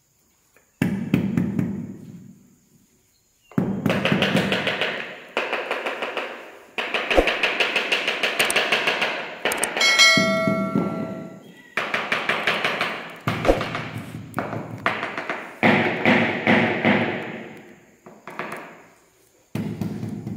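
Rubber mallet tapping ceramic floor tiles down into a mortar bed: rapid runs of knocks, each a second or two long, with short pauses between them.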